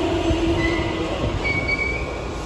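Meitetsu 2000 series μSKY train coming to a stop at the platform: a whine that has fallen in pitch holds steady and fades out a little over a second in, over a low rumble, and thin high brake squeals sound about half a second in and again near the end.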